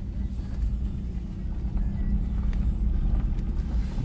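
Car driving slowly on a dirt road, heard from inside the cabin: a steady low engine and road rumble.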